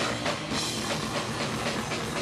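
Punk rock band playing live: electric guitar over a drum kit, the drums hitting hard and steady.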